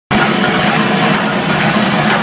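Loud live music from an arena stage, heard from the stands through a phone microphone: a dense wash of sound with a steady low note held underneath.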